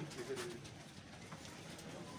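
A pigeon cooing faintly and briefly near the start, over the soft footsteps of a group walking.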